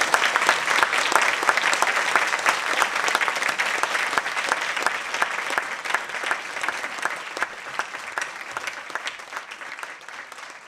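Audience applauding, many hands clapping at once, steady at first and gradually dying away over the second half.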